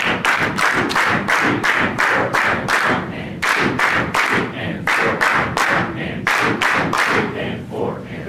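A large group of people clapping a written rhythm together, a mix of single claps and quick pairs in a pattern of quarter and eighth notes, while counting the subdivision aloud in unison ("one and two and three and four and"). The clapping stops just before the end.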